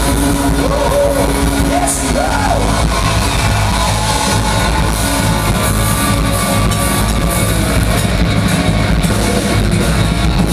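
Live pop-rock band playing loudly, with electric guitar, heard from within the audience.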